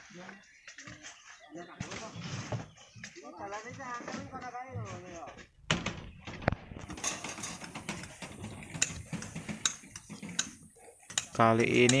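Sharp clinks and knocks of a hand tool striking rock and stones, a few a second from about halfway in, with distant men's voices talking before that.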